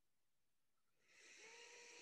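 Near silence, with a faint intake of breath in the second half.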